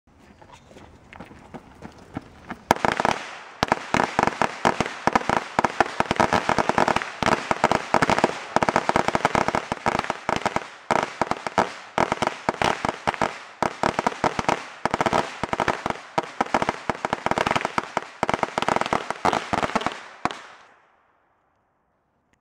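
A long string of firecrackers going off in a dense, continuous run of sharp cracks. The cracks start about three seconds in, after a quieter opening, last some seventeen seconds and stop suddenly.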